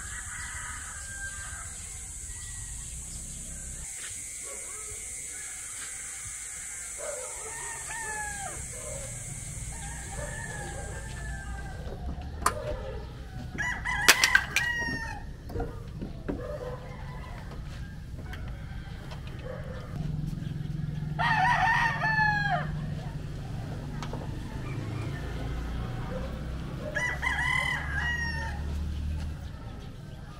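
Roosters crowing three times, each crow lasting a second or two; the loudest comes about two-thirds of the way through. A steady high-pitched hiss stops about 12 seconds in, and a few sharp knocks sound around the first crow.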